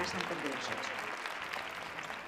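Audience applause: a steady, even patter of many hands clapping, easing off slightly in the second half. A woman's voice from a film clip is heard over it for the first half-second.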